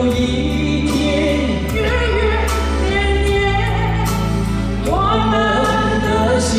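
A woman and a man singing a Cantonese pop duet into handheld microphones over amplified backing music.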